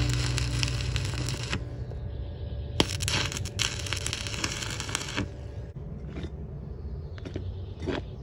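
Stick welder arc crackling in two bursts, the first ending about a second and a half in and the second running from about three to five seconds in, followed by a few faint clicks.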